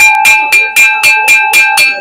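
A lidded crockery serving bowl (donga) being tapped quickly, about four strikes a second, each one ringing out in a clear, bell-like tone. The ring is offered as the piece's own sound.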